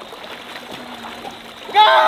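Pond water splashing and sloshing around a person wading waist-deep and pushing a floating kids' ride-on toy car through it, a steady wash of noise.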